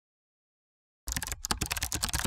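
Keyboard typing sound effect accompanying on-screen text being typed out: silence, then a rapid run of key clicks starting about a second in.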